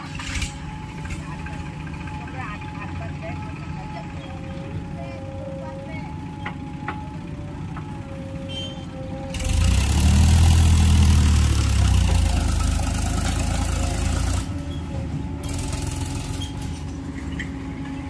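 JCB 3DX backhoe loader's diesel engine running steadily as it digs and loads sand. A tractor's engine close by gets much louder about halfway through, a deep rumble lasting some five seconds before it drops back.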